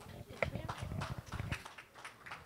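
Microphone handling noise as a live handheld microphone is passed from one person to another: irregular knocks and thumps through the PA, with a short faint vocal sound about half a second in.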